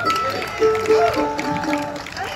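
Acoustic string instruments being tuned: single plucked notes ring out and are held, stepping between a few pitches.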